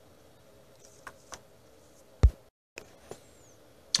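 A few light clicks and one sharp knock about two seconds in, in a quiet small room; the sound cuts out completely for a moment just after the knock.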